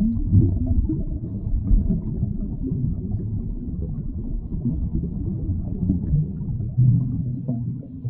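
Steady low rumble, an underwater-style sound effect laid over the animation, with uneven swells and little above the low range.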